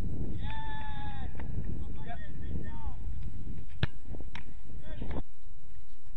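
Outdoor soccer goalkeeper drill: a long shouted call from a player, then shorter calls, over a low rumble of wind on the microphone. Two sharp thuds of a soccer ball come about half a second apart near the middle, and the wind rumble stops suddenly about five seconds in.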